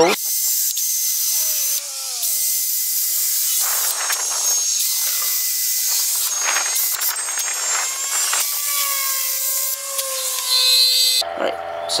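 Cordless drill running as it bores pilot holes into a wooden deck railing: a steady, hissing whir with a motor whine that falls in pitch early on and later holds steady. It cuts off suddenly about a second before the end.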